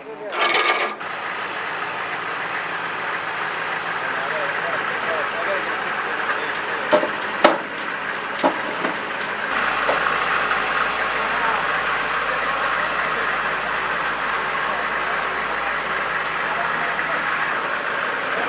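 A chain clatters briefly at the start, then a Humvee's diesel engine runs steadily as it drives up the ramps onto the trailer, with a few sharp knocks about halfway through and a low hum joining the engine a little later.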